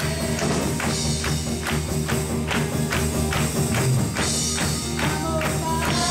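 Live church worship music: an upbeat song with a steady percussion beat about two and a half strokes a second over held low chords, with singing voices coming in near the end.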